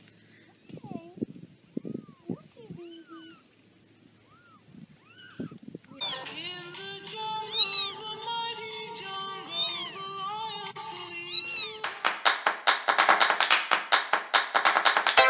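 A young kitten mewing: a string of short, high calls that each rise and fall in pitch. From about six seconds in, more rapid, higher mews sound over steady background music. Near the end, electronic dance music with a fast beat takes over.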